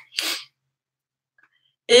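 A short breathy puff of air from a woman, lasting about half a second, then total silence until her voice starts again near the end.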